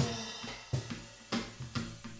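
A live electric guitar and drum kit play an instrumental passage. A cymbal crash rings out at the start and dies away, then drum hits come roughly every half second under the guitar chords.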